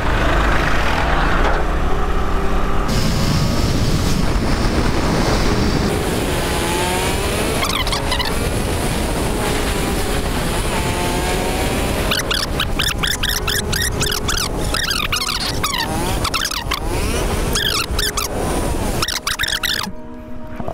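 Bajaj Avenger 220 motorcycle under way: its single-cylinder engine running steadily along the road, with dense wind rush on the microphone.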